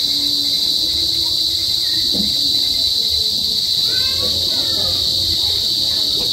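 Steady, high-pitched chorus of crickets chirring without a break.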